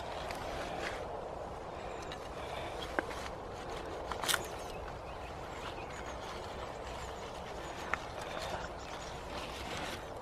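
Steady, faint outdoor background noise with a few short clicks and light rustling as a little gem lettuce is cut from the bed with a knife under crop netting.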